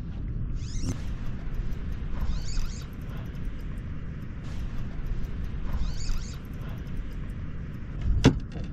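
Spinning reel's drag giving line in two short high-pitched runs, about two seconds in and again around six seconds, as a hooked fish pulls hard against the bent rod. A steady low rumble runs underneath.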